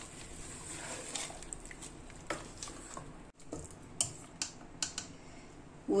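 Wooden spatula stirring thick dal in an aluminium pressure cooker: soft, wet squelching and scraping, with a few light knocks in the second half.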